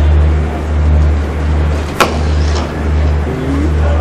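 A single sharp crack about two seconds in, a cricket bat striking a ball in the nets, over a loud steady low rumble that swells and dips.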